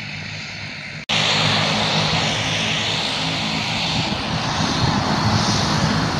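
Airplane engines running with a steady low drone and a high whine, cutting in abruptly and loud about a second in, as the plane moves slowly on the airstrip before take-off.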